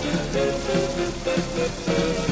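Fireworks-show music playing loudly over outdoor park loudspeakers, a song with held notes, over a steady hiss of noise.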